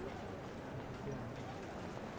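Crowd murmuring on a packed street, with many footsteps shuffling over the paving as the procession moves along.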